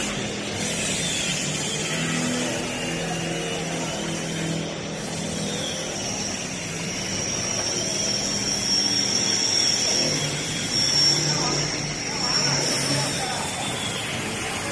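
Vehicle assembly-shop ambience: indistinct workers' voices over machinery noise, with a steady high-pitched whine that becomes prominent about halfway through.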